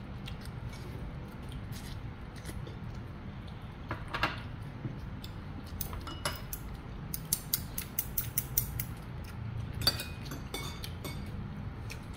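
Scattered light clicks and taps of forks and chopsticks against plates and paper takeout boxes during a meal, with a quick run of clicks in the second half, over a low steady hum.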